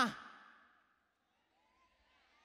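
The end of a woman's amplified voice through a hall PA, dying away in the room's echo within the first half second, then near silence.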